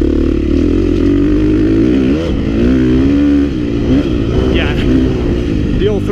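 2016 KTM 350 XC-F's single-cylinder four-stroke engine running under way on a dirt trail, its pitch rising and falling with the throttle and dipping low about two to three seconds in before climbing again.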